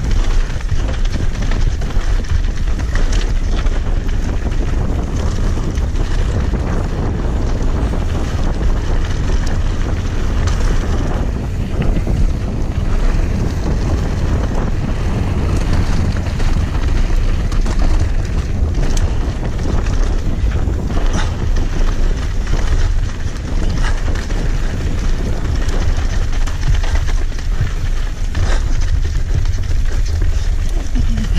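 Wind buffeting a camera microphone as an enduro mountain bike descends a dry dirt trail, over a steady rumble of tyres on dirt. Frequent small clicks and rattles come from the bike over rough ground.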